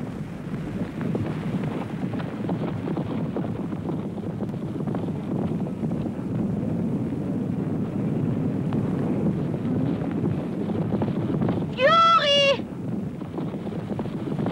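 A herd of horses galloping, a steady rumble of many hoofbeats, with one horse giving a short, loud whinny about twelve seconds in.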